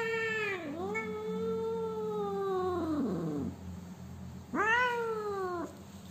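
A cat crying out in long, drawn-out meows while its foreleg is held and handled for wound care. Three calls: one ending just after the start, a long one that drops in pitch at its end, and a shorter one near the end.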